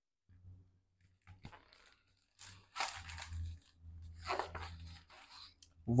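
Faint rustling and crinkling of a picture book's paper pages being handled and turned, in two main bouts in the middle, over a low hum.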